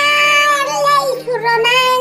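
A high, child-like voice singing a long drawn-out note, then a shorter held note, over faint steady background music.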